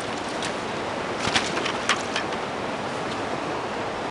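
Steady rushing of a river's flowing water, with a few faint clicks and knocks in the first half.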